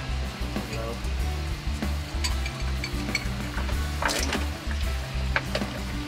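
Water spraying from a hose nozzle into a drinking glass: a steady hiss, with a few light clinks of the glass, over background music.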